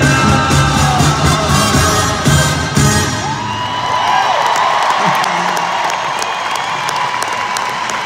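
Live band music playing, which ends about three seconds in, then a large arena crowd cheering and whooping.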